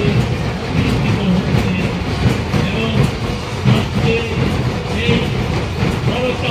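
Loud, dense din of a large crowd packed close around the microphone, with music mixed in.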